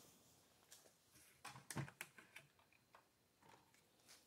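Faint clicks and light knocks as the nose hatch door of a Long-EZ homebuilt aircraft is unlatched and swung open on its hinges, the clicks bunched together in the middle of an otherwise near-silent stretch.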